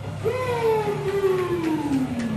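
A man's voice holding one long, drawn-out note that slides slowly down in pitch: a ring announcer stretching out a wrestler's introduction.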